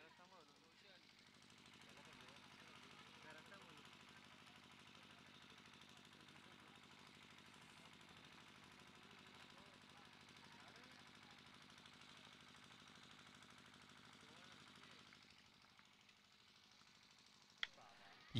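Near silence: faint distant voices and a low steady hum. Near the end, a single sharp crack of a cricket bat hitting a tennis ball.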